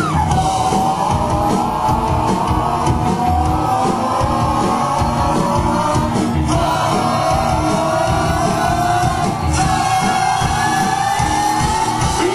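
Live rock band playing loud. A long held high melody line sits over the drums and bass, breaking and starting again twice.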